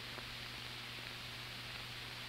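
Steady hiss with a low hum from the soundtrack of an old film; no distinct sound stands out.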